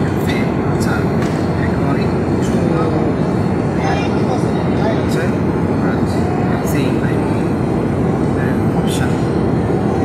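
Steady airliner cabin noise in flight: an even, loud rumble of engines and rushing air, with a few faint clicks over it.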